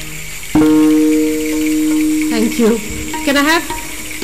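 Violin playing one long bowed note of two strings sounding together, starting suddenly about half a second in and held for nearly two seconds. A woman's voice then starts speaking as the note dies away.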